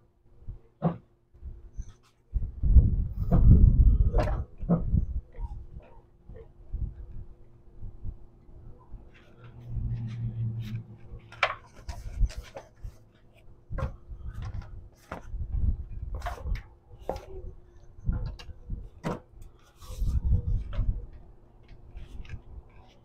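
Scattered metal knocks, clicks and scraping, with bouts of low rumbling thuds, as a loosened car subframe is worked down on a transmission jack. A faint steady hum runs underneath.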